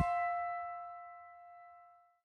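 Background music ending: a final held chord of several steady notes rings on and fades away to near silence.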